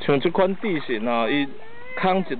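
A high voice calling, its pitch sliding up and down, for about a second and a half.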